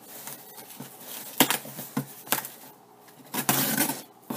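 A knife cutting the packing tape on a cardboard shipping box: a couple of sharp clicks, then a longer, louder slicing stroke near the end.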